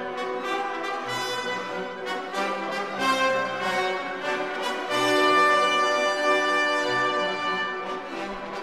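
Orchestral background music with brass to the fore, playing held notes over a low beat, swelling louder about five seconds in.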